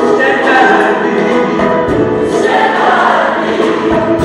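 Gospel choir singing, many voices together.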